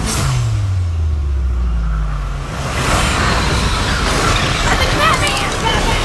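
Movie trailer sound design: a deep tone slides down in pitch over the first two seconds or so, then a loud rumbling wash builds, with short high squeals near the end.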